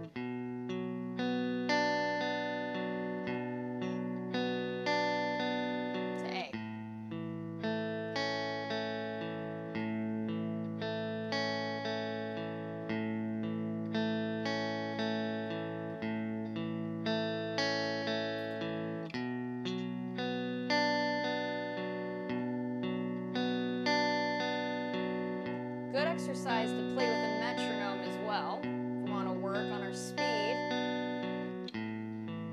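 Clean electric guitar, a Fender Stratocaster, picking an A chord and a B minor barre chord string by string in a steady, even rhythm. The notes ring into each other, and it switches between the two chords a few times.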